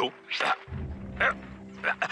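Three short, wordless vocal bursts from a cartoon character, like grunts or yelps, over a low, steady note of background music.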